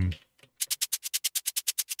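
A sampled shaker being previewed on an Elektron Octatrack MKII sampler. It plays quick, even strokes at about eleven a second, starting about half a second in.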